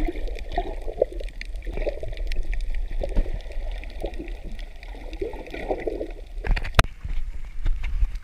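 Muffled underwater sound picked up by an action camera held below the surface over a coral reef: gurgling water with scattered faint crackles. About six and a half seconds in come two sharp, loud sounds, after which the sound changes to open air.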